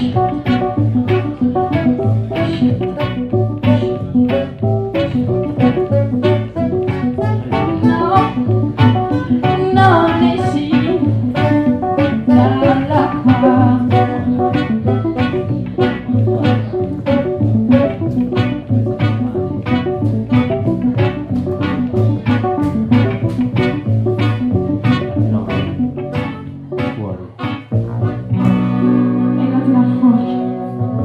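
Live band playing a song with electric guitar, drums keeping a steady beat, and horns. Near the end the playing dips briefly, then the horns hold sustained notes.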